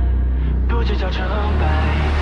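Pop song: a male voice singing Mandarin lyrics over a deep, steady synth bass drone.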